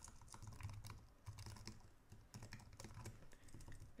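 Faint computer keyboard typing: a steady run of quick keystrokes.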